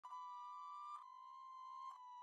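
Faint, steady high electronic tone with overtones, like a soft synthesizer note in a soundtrack, stepping slightly down in pitch with a light click about a second in.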